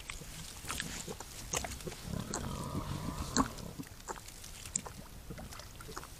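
A wild boar feeding at the ground, with a run of short crunching and rustling clicks, and a drawn-out grunt from about two seconds in that lasts just over a second.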